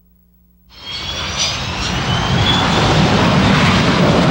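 Boeing 727 jetliner's engines running loud as it moves fast down the runway. The jet noise comes in suddenly under a second in, with a high whine rising slightly in pitch.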